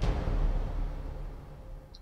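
Dramatic score hit: a sudden low boom with a hiss over it, fading away over about two seconds.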